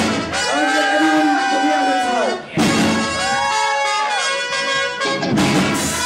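Live rock band with a trumpet-led horn section playing two long held notes, each falling off in pitch at its end, over electric guitars and drums. There is a short break with a drum hit in the middle.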